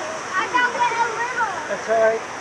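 Fast, churning water rushing past a river-rapids ride raft, with riders' voices over it.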